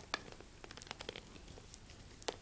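Faint, scattered small clicks and scratches of hard plastic: the clear half-shells of a robotic laser ball being fitted together by hand.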